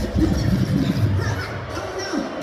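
Bass-heavy music played over a concert PA system, with crowd noise mixed in; the bass thins out near the end.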